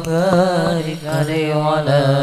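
Male voices singing an Islamic sholawat through microphones, the melody held in long wavering, ornamented notes over a steady low drone.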